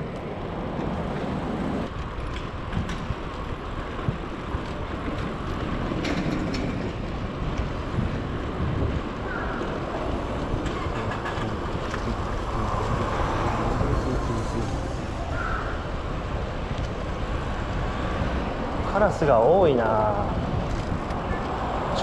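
Steady street-traffic noise with wind buffeting the microphone, heard while riding along a city road among cars and trucks.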